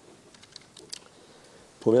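A few faint, scattered clicks of a computer keyboard being typed on, during a pause in speech. A man's voice starts near the end.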